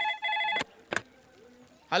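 Payphone ringing with a steady electronic ring that stops about half a second in, followed by a single sharp click as the handset is lifted.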